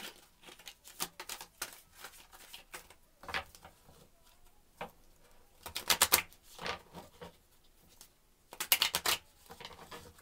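A deck of oracle cards being shuffled by hand: soft card slides and flicks throughout, with two quick, dense flurries of riffling cards about six and nine seconds in.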